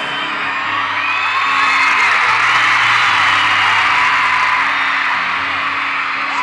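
A grand piano plays slow, held chords under a crowd screaming and whooping. The screaming swells loudest in the middle.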